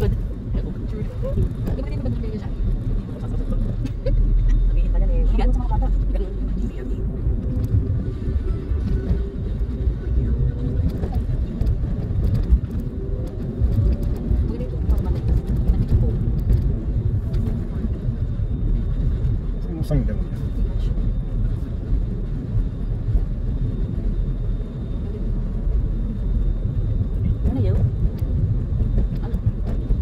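Steady low road and engine rumble heard inside the cabin of a moving car, swelling louder for a couple of seconds about four seconds in.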